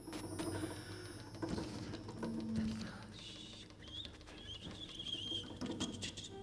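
Sparse free-improvised percussion: a hand-struck mark tree (bar chimes) shimmers at the start, with scattered light taps, and a warbling high squeak runs through the second half.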